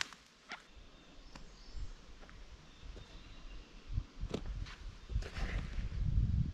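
Footsteps on soft forest ground with scattered light knocks and rustles, as of tools being handled, and a cluster of low thuds near the end.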